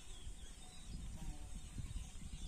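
Outdoor ambience: a low rumble of wind buffeting the microphone, with a few faint, distant bird chirps.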